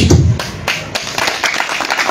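Audience clapping: a dense patter of many hand claps that takes over just after the start, as a pause in the speaker's address is filled with applause.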